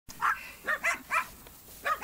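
A six-week-old puppy yapping: about five short, high-pitched barks in quick succession.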